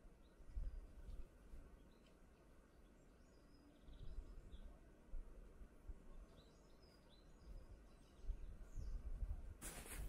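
Quiet outdoor ambience with scattered faint bird chirps and intermittent low rumbles. Near the end a sudden burst of loud noise cuts in.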